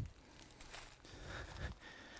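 Faint footsteps on dry leaf litter and twigs, a few soft steps.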